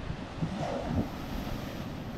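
Ocean surf breaking and washing up over the sand at the water's edge, with wind on the microphone.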